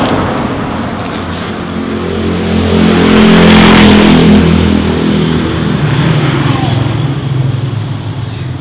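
A motor vehicle passing close by: its engine note builds to a peak about three to four seconds in and then fades away.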